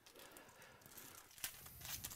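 Faint tearing and crinkling of a foil trading-card pack wrapper being ripped open, with a sharper crackle about one and a half seconds in.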